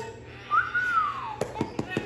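A single whistled note that rises briefly and then slides down in pitch, followed about halfway through by a run of quick taps from a hand patting a rug.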